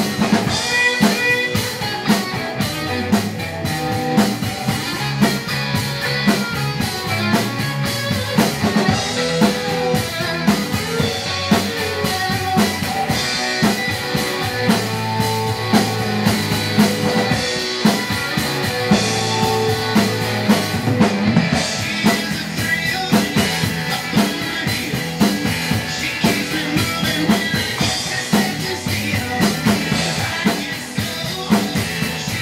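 Rock drum kit played along to a rock band recording, with a steady kick-and-snare beat and cymbals under pitched instruments, in an instrumental passage with no singing.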